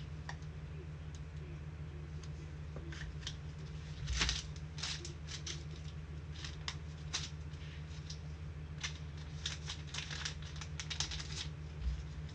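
Scattered light clicks and crinkles of hands handling foil trading-card packs and cards, over a steady low hum. The loudest rustle comes about four seconds in, with another just before the end.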